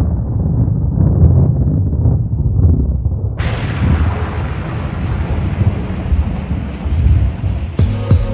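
Intro sound design of a deep, uneven rumble. About three and a half seconds in, a bright hiss suddenly opens up over it and holds, building toward the beat that starts at the very end.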